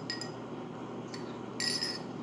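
A metal teaspoon clinking against a small ceramic coffee cup while stirring: a light clink near the start, a faint tick about a second in, and a quick run of ringing clinks near the end.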